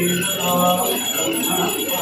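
Temple bells ringing continuously as the aarti is waved before a Shiva idol, over devotional music with short repeated notes.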